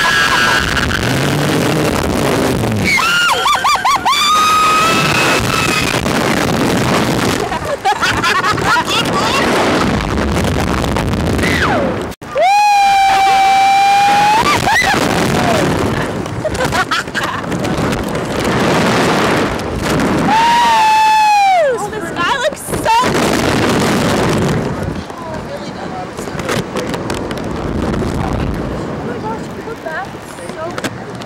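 Riders on a slingshot reverse-bungee ride screaming over heavy wind rushing across the microphone. There are long high screams about three seconds in, again about twelve seconds in (the longest and loudest), and about twenty seconds in.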